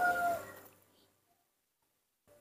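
A rooster's crow trails off within the first half second, followed by near silence.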